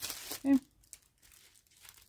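Plastic wrapping on a rolled diamond-painting package crinkling as it is handled, mostly in the first half-second, then only faint rustles.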